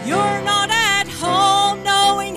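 A woman singing a gospel song over instrumental accompaniment, holding long notes with vibrato.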